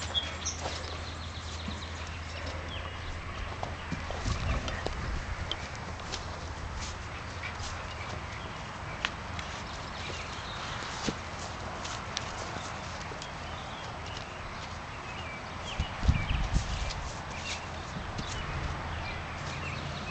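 Hooves of a horse and a small flock of sheep moving on packed dirt, scattered light steps with louder low thuds about four seconds in and again around sixteen seconds in.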